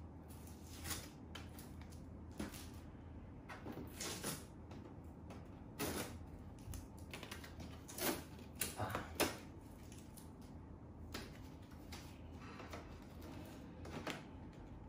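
Hands opening the plastic front panel and pre-filter of a Samsung air purifier: scattered, uneven plastic clicks, scrapes and rustles, with the loudest snaps about six, eight and nine seconds in.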